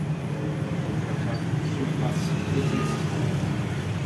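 Steady low motor rumble, with faint murmured voices in the background.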